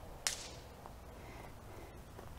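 Faint movement noise from walking with a handheld camera: one brief swish about a quarter of a second in, over a low rumble.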